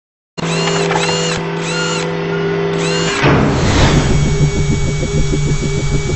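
Produced logo-intro sound effects: a steady mechanical whirring hum with a high chirp that repeats about every half second, then a whoosh about three seconds in that leads into a fast pulsing beat.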